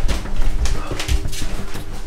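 Hurried footsteps and handling noise from a handheld camera on the move: a string of irregular knocks and clicks over a low rumble.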